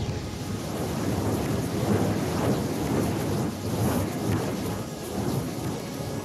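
Dense, thunder-like rumbling noise in the performance's soundtrack score, swelling and ebbing in waves.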